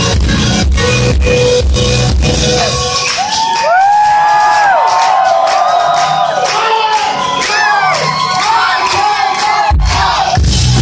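Live indie rock band playing with heavy bass and drums. About three seconds in the bass and drums drop away to a breakdown, and the concert crowd cheers and whoops over the quieter music. The full band comes crashing back in near the end.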